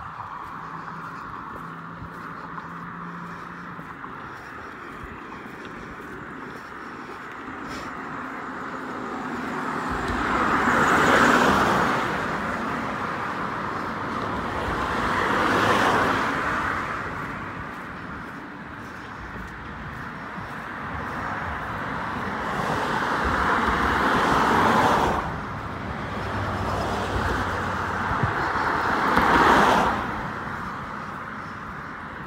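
Cars passing close by on a road, one after another in the second half, each one's tyre and engine noise swelling and then fading, over steady traffic noise.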